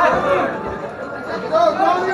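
Voices calling out and chattering in a large hall, growing louder near the end.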